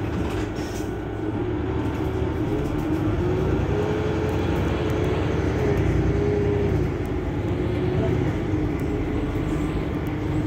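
Mercedes-Benz Citaro C2 hybrid city bus standing at a stop with its diesel engine idling: a steady low hum with a whine that rises a little a couple of seconds in and drops back near seven seconds.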